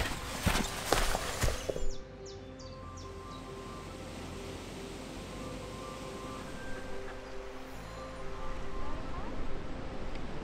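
Footsteps on grass for about the first two seconds, a step every half second or so, then soft background music with sustained notes.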